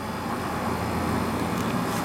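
Steady outdoor background noise, low-pitched with a faint hiss above, without distinct events.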